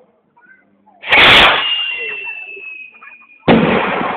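Cuetes (firework rockets) going off: two loud bangs about two and a half seconds apart, each fading away slowly, the first followed by a thin, slightly falling whistle.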